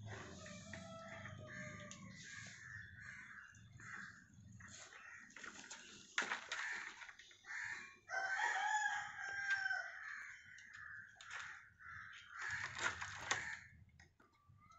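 A rooster crowing, twice: once near the start and again, louder, about eight seconds in.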